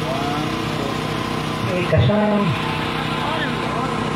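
A voice speaking briefly through a PA microphone about two seconds in, over a steady droning hum made of many level tones.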